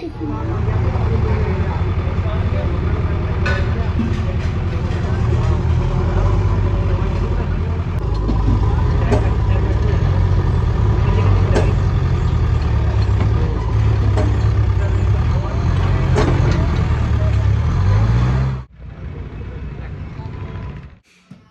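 Heavy diesel machinery running with a loud, deep, steady rumble: a backhoe excavator working beside a loaded tipper truck. A few sharp knocks and clanks sound through it, and it cuts off suddenly near the end.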